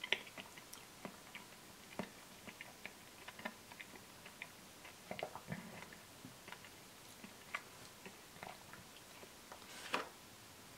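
Faint, scattered mouth clicks and lip smacks of someone tasting a spoonful of ice cream. Near the end comes a louder click of a metal spoon against the plastic ice cream cup.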